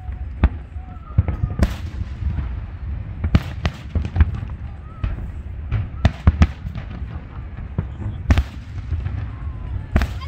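Aerial fireworks display: shells bursting in many sharp bangs at irregular intervals, several a second at times, over a continuous low rumble. The biggest bangs fall about a second and a half in, around three and a half seconds in, and a little after eight seconds.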